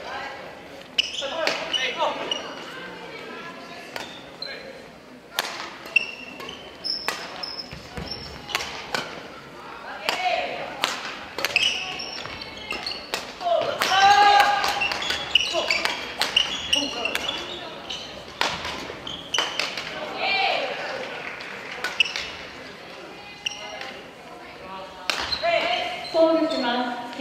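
Badminton rally: repeated sharp hits of rackets on the shuttlecock, short high squeaks, and players' brief calls and voices in a gymnasium hall.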